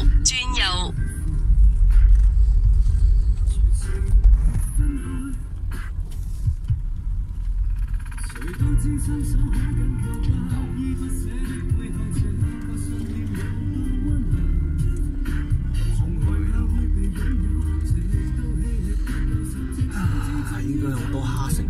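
Low, steady rumble of a car driving slowly, heard inside the cabin, with music starting about eight seconds in and playing over it.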